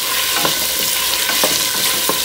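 Diced carrots, onion and celery sizzling in oil in a stainless steel stockpot while a wooden spoon stirs them, with a few light knocks of the spoon against the pot.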